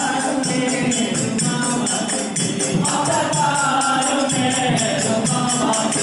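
Group devotional singing, a bhajan, with jingling percussion keeping a steady beat.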